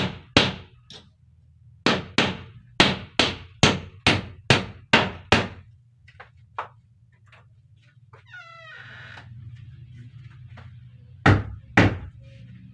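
Hammer striking nails into wooden wall panelling: a run of sharp blows, about two or three a second, through the first half, then two more loud blows near the end. A short squeak comes in the pause between them.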